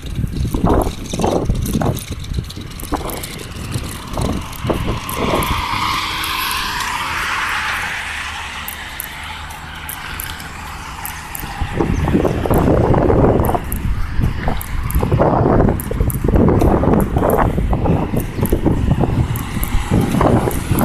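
Road traffic passing by, with one vehicle's tyre hiss swelling and fading between about four and eight seconds in. Wind buffets the phone microphone throughout and gets louder in the second half.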